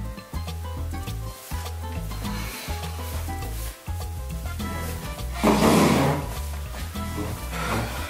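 Background music with melodic notes over a steady bass line. About five and a half seconds in, a loud scrape lasting under a second: a wooden chair dragged across a hardwood floor as someone sits at the table. A fainter scrape comes near the end.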